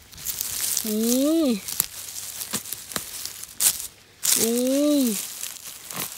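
Dry fallen leaves and moss crackling and rustling under a gloved hand as a bolete mushroom is picked from the ground, with a few sharp snaps about two to three and a half seconds in.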